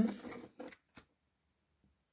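The trailing end of a drawn-out spoken 'um', then a faint short rustle and a single light tap as oracle cards are handled on a table.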